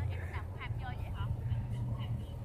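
Quiet speech: a line of dialogue from a drama episode playing back, over a steady low hum.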